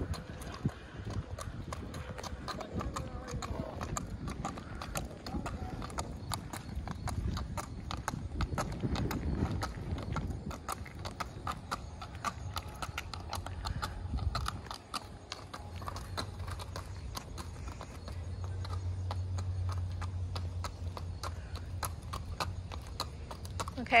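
Thoroughbred mare's hooves clip-clopping on pavement at a walk, a steady even rhythm of hoofbeats. A low steady hum joins in during the second half.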